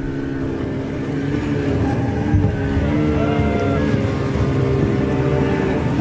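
Outboard motor of a crowded inflatable dinghy running steadily, a low rumble under a held tone that wavers slightly in pitch.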